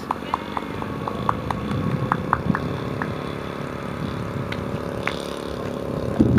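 Zenoah G-38 single-cylinder two-stroke gas engine of a quarter-scale radio-control biplane running steadily at low throttle as the model taxis on grass, its pitch lifting slightly a couple of seconds in. A scatter of short sharp ticks sounds over it.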